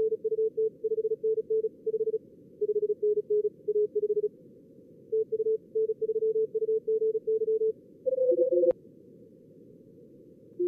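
Morse code (CW) from a contest-logger practice simulator: strings of keyed mid-pitched tones at a few slightly different pitches, as different simulated signals send in turn, over a steady narrow band of simulated receiver hiss. Just after 8 s two signals at different pitches overlap briefly, a single click follows, and only the hiss remains near the end.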